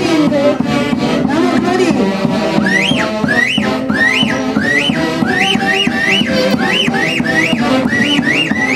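Live Andean folk band with saxophones, violin and drums playing a lively dance tune. Partway through, a high rising-and-falling figure repeats about twice a second over the band.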